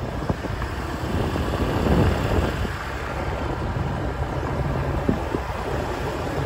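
Wind rushing over the microphone of a moving motorcycle, with the motorcycle running beneath it, steady throughout.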